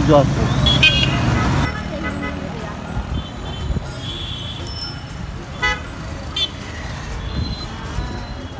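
Street traffic: a motorcycle runs close by and fades about a second and a half in, leaving a steady low rumble. Several short horn toots sound over it, two of them close together near the middle.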